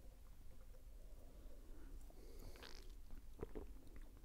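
Faint sips and swallows of beer drunk from glasses, over a low steady room hum, with a few soft clicks about three seconds in.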